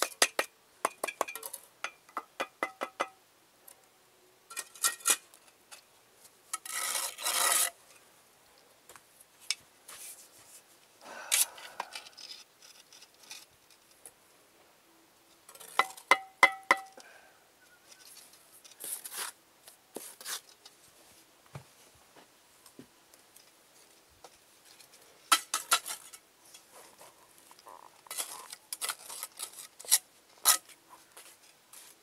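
Steel brick trowel tapping and scraping on bricks and mortar: clusters of quick, ringing metallic taps, with rasping scrapes in between, the longest lasting about a second.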